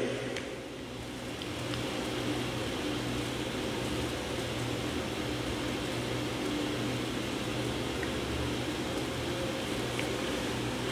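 Steady room background noise: a continuous mechanical hum with a low drone and faint hiss, like an air conditioner or fan running.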